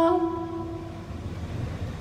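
Live metal-gig music between vocal phrases: a held female sung note cuts off just after the start, its reverb tail fading within the first second. It leaves a quiet, low wash of amplified band sound.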